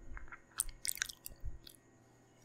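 Close-miked mouth sounds: a quick run of wet clicks and smacks from lips and tongue, stopping about a second and a half in.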